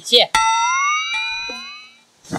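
Comic sound effect: a single ringing guitar-like note that starts suddenly, slides slightly upward in pitch and fades away over about a second and a half.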